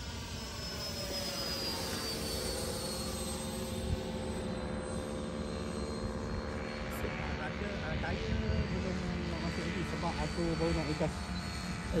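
Electric ducted-fan whine of a Freewing T-33 Shooting Star RC jet's 80mm EDF flying overhead. The pitch falls over the first couple of seconds as it passes, then holds steady.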